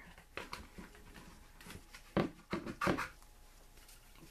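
A wet wipe being pulled from its pack and handled: a few soft clicks and rustles, the loudest a little past halfway.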